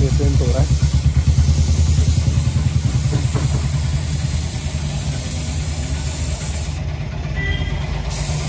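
Gravity-feed air spray gun hissing as it sprays paint onto a motorcycle part, the hiss stopping about seven seconds in, over a steady low mechanical rumble.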